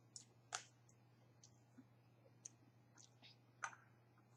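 Faint eating sounds at a table: a few short, scattered clicks and mouth smacks from sushi being eaten with chopsticks, two a little louder, about half a second in and near the end, over a low steady hum.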